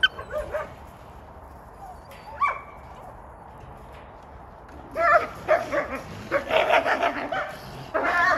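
Canine yips and whines: a short call at the start, another about two and a half seconds in, then a quick run of yelping calls from about five seconds on.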